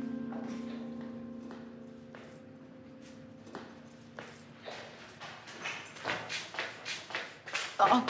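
Footsteps on a stone staircase, a sharp knock about two to three times a second, growing louder as they come closer. A held music chord fades out over the first few seconds.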